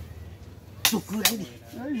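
Wooden xiangqi piece clacking down on the board as a move is played: two sharp knocks about half a second apart, a little under a second in.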